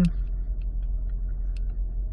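Steady low rumble in the cabin of a 2015 Toyota Camry Hybrid that is switched on and sitting in Park, with a few faint clicks.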